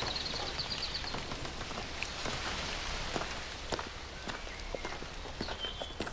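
Footsteps crunching on a gravel path over a steady outdoor hiss. A bird trills briefly at the start and chirps again near the end.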